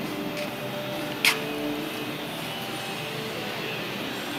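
Steady warehouse background noise with faint drawn-out tones, broken by one sharp knock a little over a second in.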